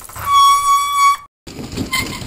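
A loud, steady horn-like tone held for about a second that cuts off abruptly, followed by a noisy stretch with scattered clicks.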